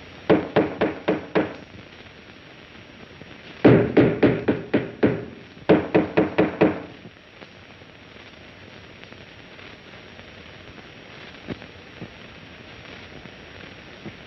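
Loud, rapid banging on a wall in three bouts of about five to eight blows each, the last two bouts close together.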